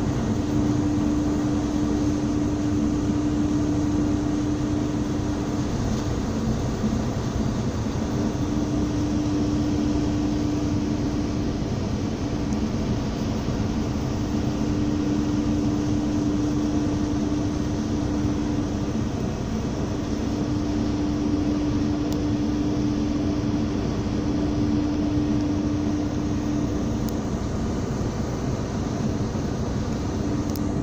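Steady drone of a ship's engine under way, heard on board, with a low hum that swells in and drops out every few seconds over a constant rush of wind and sea.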